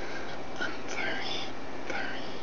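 A man whispering a few breathy words close to the microphone over a steady background hiss.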